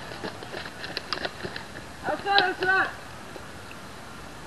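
Quick, irregular light taps and clicks of a catcher's footwork as he comes out of his crouch to throw. A short spoken word follows about two seconds in.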